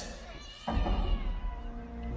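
A small dinosaur's high, meow-like call played over the arena sound system, with the show's music underneath. It starts about two-thirds of a second in and wavers in pitch.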